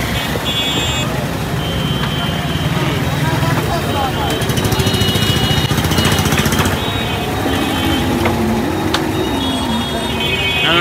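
Busy street traffic: vehicle engines running with a steady rumble and horns tooting several times, with people talking in the background.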